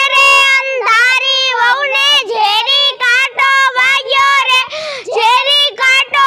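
A child singing a garba song unaccompanied in a high voice, holding long, wavering notes with short breaks between phrases.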